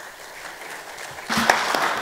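Audience applauding, faint at first and swelling to fuller clapping a little over a second in, as the talk ends.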